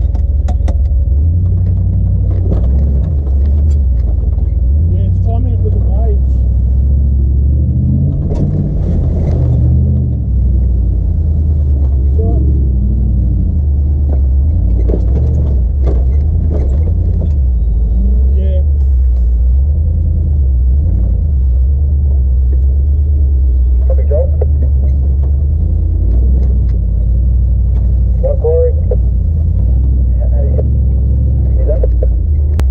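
LS1 V8 engine of a Nissan Patrol GQ running steadily at low revs as the truck crawls over rocks, with scattered knocks and clunks from the vehicle bumping over the rock.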